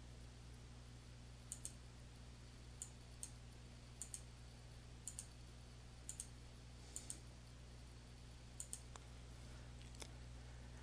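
Faint computer mouse button clicks in quick pairs, about seven pairs roughly a second apart, over a low steady hum.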